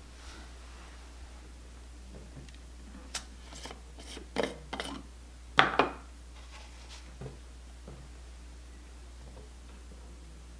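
Short knocks and clicks of hard plastic as the hydrogen water bottle's cap is taken off and the bottle and a small sample vial are handled on the table, the loudest a pair of knocks a little past halfway.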